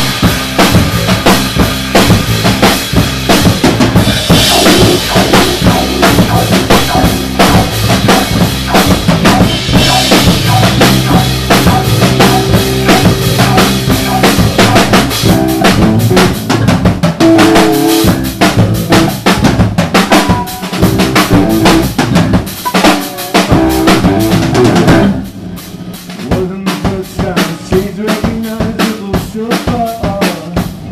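Three-piece rock band playing live and loud: drum kit, amplified electric bass and electric guitar, in an instrumental stretch without vocals. About 25 seconds in the full sound drops abruptly to a quieter, sparser passage with the drums keeping time.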